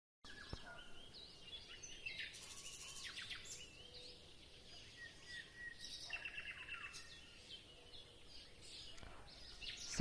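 Faint birdsong: several short chirps, whistled glides and quick trills from small birds.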